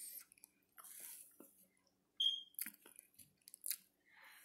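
A person chewing and biting food close to the microphone: irregular mouth clicks and short crunchy bursts, with a brief high squeak about halfway through.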